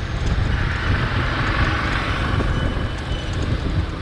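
Riding noise from a moving motorbike: low wind rumble on the microphone mixed with engine and tyre noise, swelling a little in the middle.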